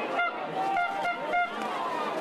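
Four short honking toots from a horn, all at the same pitch, close together in the first second and a half, over crowd chatter.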